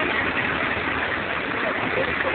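Steady engine noise from a nearby vaporetto waterbus, with voices faintly mixed in.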